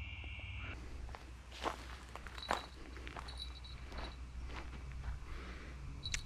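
Faint footsteps and scuffs on a dry dirt bank, with scattered light clicks as a fishing rod is picked up and handled. A steady high insect buzz stops under a second in, and a few short high chirps come later.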